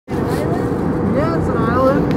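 Steady low rumble of an airliner cabin in flight, with a person's voice coming in about a second in.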